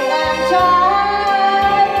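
A woman singing into a microphone, accompanied by a Yamaha electronic keyboard. She holds one long note through the middle.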